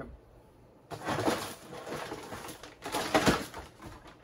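Rummaging and handling noise, starting about a second in: a plastic zip-lock bag of 3D-printed blaster parts rustling, with the parts clicking inside as it is picked up.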